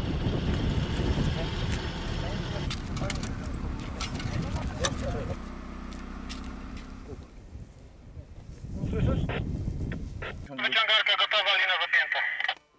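Car driving on a road with wind noise on the microphone and scattered knocks, while it pulls out a paragliding tow-winch line. It drops to quieter outdoor sound, and voices come in near the end.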